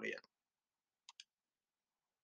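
Near silence broken about a second in by two faint, quick clicks, made on the computer as the presentation slide is advanced.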